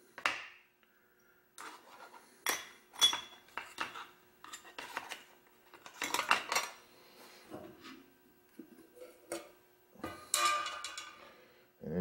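Clinks and clatter of small carburetor parts and the carburetor body being handled into a parts-cleaner dip basket and its can. The knocks are irregular, loudest about three seconds in, around six seconds and near the end.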